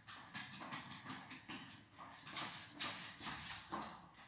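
A cocker spaniel's claws clicking and scrabbling on a hard marble floor as it jumps up and drops back down, a quick, irregular run of taps, several a second.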